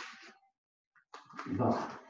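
Karateka's forceful voiced exhalation, a short grunted "oh" with a strike in kata, about a second and a half in; the tail of the previous one fades out at the start.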